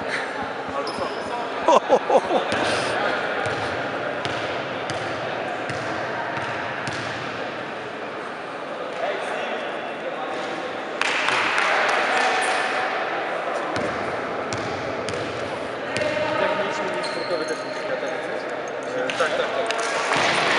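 Basketball bouncing on a sports-hall floor during a game, amid echoing voices and general hall noise, with a few sharp knocks and a louder spell of noise a little past halfway.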